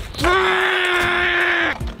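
A man's voice holding one long, steady-pitched yell for about a second and a half: a frustrated cry at a missed kickless scooter trick.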